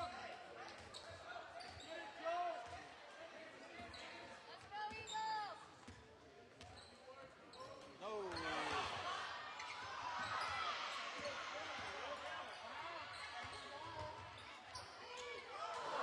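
Basketball being dribbled on a hardwood gym floor amid spectators' voices. About halfway through, the crowd noise swells and stays loud.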